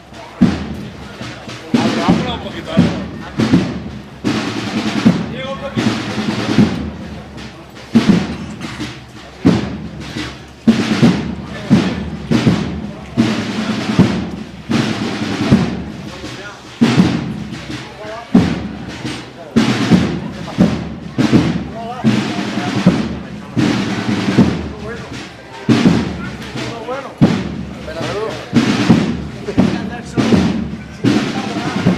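Procession drums, bass drum and snare, beating a steady slow march, with voices of the people around them.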